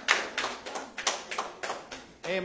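Hand claps in a steady rhythm, about three to four a second, from a congregation clapping along at the end of an a cappella hymn.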